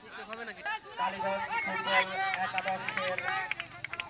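Crowd of spectators at an outdoor football match talking and calling out over one another, several men's voices overlapping, getting louder about a second in.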